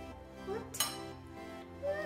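Background music with steady held notes. A single sharp clink of glass against the glass mixing bowl comes a little under a second in.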